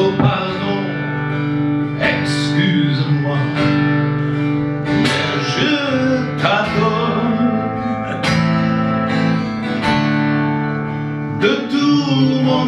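Live acoustic music: an acoustic guitar strummed in a steady rhythm, with a melody line that bends up and down above it.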